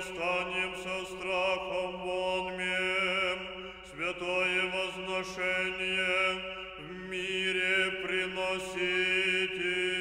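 Russian Orthodox church choir singing unaccompanied in Russian: sustained chords over a steady low held note, with phrases starting afresh about four and seven seconds in.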